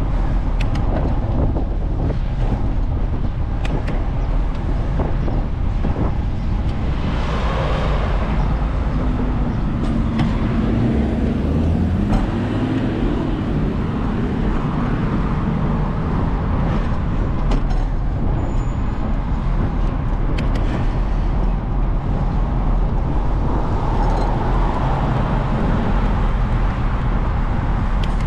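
Street traffic heard from a moving bicycle: a steady low rush of wind and road noise on the microphone, with car engines passing. One vehicle's engine tone rises and falls from about nine to fourteen seconds in.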